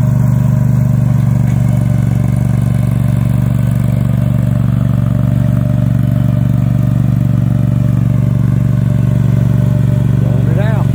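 Small engine of a stand-on turf prep machine running at a steady, even pitch as it slices grooves into dead bermuda turf.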